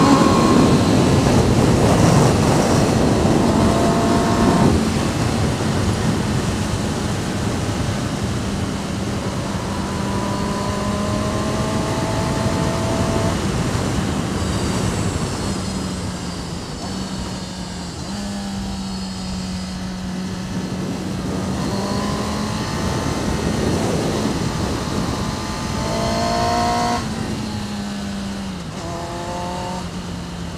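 Sport motorcycle engine running under way over rushing wind and road noise. The engine note holds mostly steady and rises several times as the throttle opens, loudest in the first few seconds and again with rising revs near the end.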